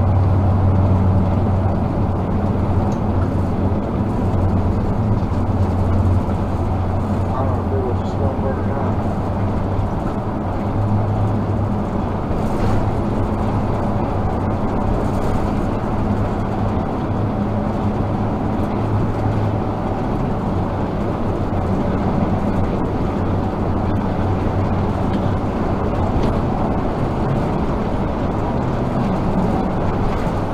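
Vehicle interior noise while cruising on the highway: a steady low engine drone under constant road and tyre noise, heard from inside the cab.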